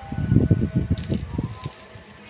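Denim-look leggings being turned over and handled close to the microphone: cloth rustling and brushing with a run of dull, low thumps for about a second and a half, then dying down.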